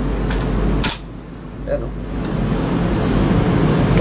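Cocking handle of an airsoft MP5 SD9 replica being worked: two sharp clicks, the second and louder one just before a second in. A steady low hum runs underneath.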